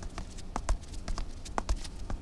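Footsteps of several people going down hard stone stairs, the sharp clicks of high heels among them, irregular and several a second.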